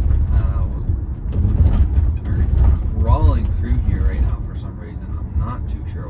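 Steady low road and tyre rumble inside the cabin of a moving Tesla Model Y electric car, with no engine sound. Short bits of indistinct talk come through over it.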